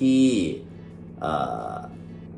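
A man's voice speaking Thai: one word at the start, a pause, then a short voiced vocal sound about a second later.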